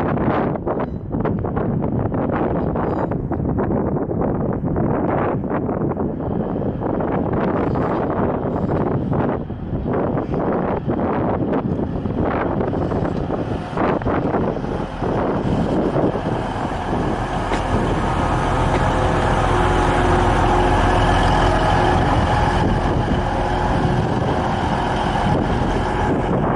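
A TransPennine Express Class 185 diesel multiple unit running through the station, its wheels clattering rapidly over points and rail joints. In the second half the clatter gives way to a steady diesel engine drone with a low hum.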